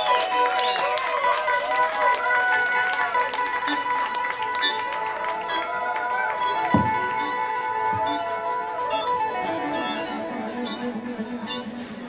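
Live funk-jam band playing, with electric guitar and keyboards holding sustained notes and voices rising and falling over them; the music grows quieter near the end.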